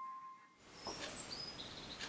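The last held note of the piano music dies away, then after a brief gap there is faint room noise with a few short, faint high bird chirps in the background.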